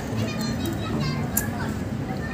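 Young footballers calling and shouting across a grass pitch, faint and distant, over steady low background noise.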